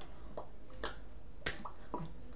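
A few short, sharp clicks and slaps made by a person signing in sign language, from hand contact and mouth movements, with the loudest slap about one and a half seconds in.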